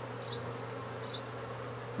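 Many honeybees flying around a hive entrance, a steady buzzing drone of a busy, healthy colony out on orientation and cleansing flights. Two faint short high chirps sound over it.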